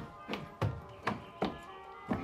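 Film soundtrack: music with steady held tones over a regular series of short knocks or thumps, about three a second.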